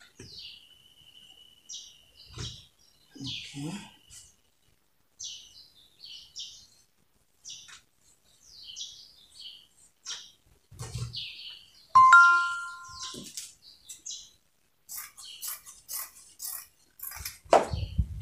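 Printed cotton cloth being handled, folded and smoothed on a cloth-covered table, in soft intermittent rustles. About twelve seconds in, a short two-note tone lasting about a second is the loudest sound. Near the end, scissors begin cutting the fabric.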